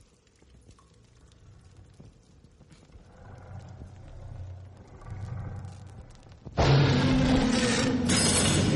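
A low rumble swells, then a sudden loud creature-like roar breaks in near the end and keeps going: a monster roar sound effect.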